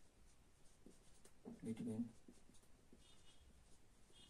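Marker pen writing on a whiteboard: faint, short scratching strokes, with a faint high squeak near the end. A brief voiced murmur from the writer, about halfway through, is the loudest sound.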